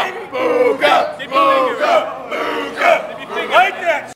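Several men yelling and whooping wordlessly together, voices overlapping over crowd noise.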